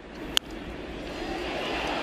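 Sharp crack of a wooden baseball bat striking the ball about a third of a second in, followed by stadium crowd noise swelling steadily.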